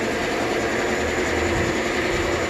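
A machine running with a steady hum that holds several unchanging tones throughout.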